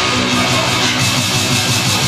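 Loud recorded rock song with guitar, played back over a club sound system.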